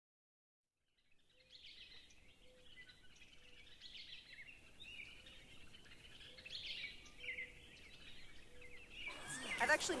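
Faint birdsong: small birds chirping and twittering, with a short low note repeating a little more than once a second. It starts about a second in after silence, and voices rise under it near the end.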